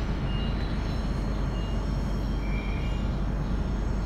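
Passenger train rolling slowly through a station, heard from inside the carriage: a steady low rumble with a few faint, short high squeals, the strongest a little past halfway.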